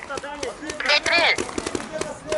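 Paintball markers firing a rapid, uneven string of sharp pops across the field, with a raised voice shouting about a second in.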